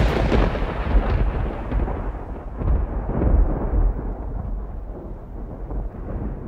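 A deep rolling rumble, loudest at the start and swelling again twice, slowly dying away as its high end fades first.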